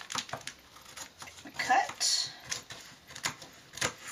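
Scissors cutting through a plastic baseball-card sleeve sheet: a run of sharp, irregular snips and clicks as the blades close.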